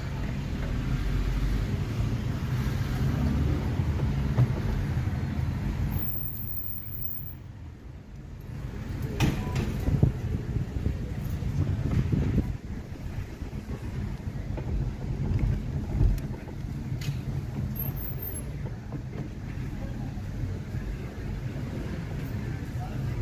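Low, steady rumble of a car's engine and tyres heard from inside the cabin as it crawls through town traffic, with a few sharp clicks or knocks. The rumble drops away briefly about seven seconds in.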